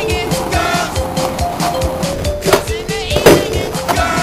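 Music with a steady beat, a stepping melody line and a sung vocal, with two sharp hits in the second half, the second of them the loudest sound.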